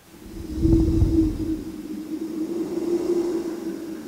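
A low ambient drone fades in from silence. A deep rumble swells about half a second in and eases by the middle, over a steady low hum that carries on.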